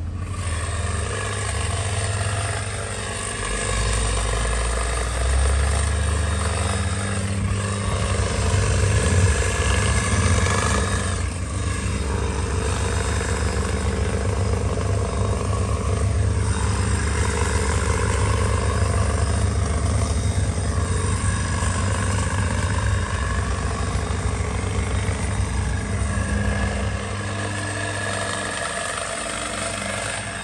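Gas-powered hedge trimmer running as it shears a shrub, its small two-stroke engine held at working speed and easing off near the end.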